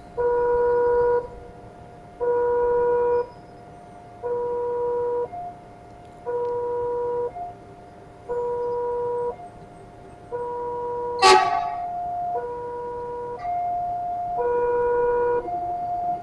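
A railway level-crossing warning alarm sounds a slow two-tone signal, changing pitch about once a second, to warn that a train is approaching. The electric commuter train's rumble grows in the second half, and a single short, loud blast comes about eleven seconds in.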